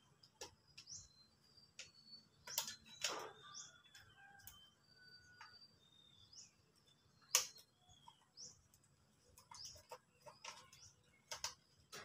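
Scattered clicks and knocks of a white plastic wall switch/outlet unit being handled and fitted into its wall box, the loudest about three seconds in and again past seven seconds. Short bird chirps come between them.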